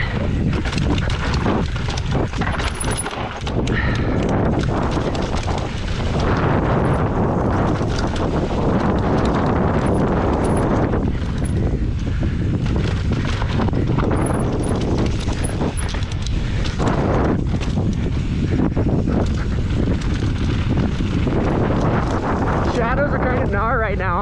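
Wind noise on a bike-mounted action camera's microphone as an enduro mountain bike descends a dry, rocky dirt trail, with the tyres rolling and the bike rattling and knocking over rocks and roots.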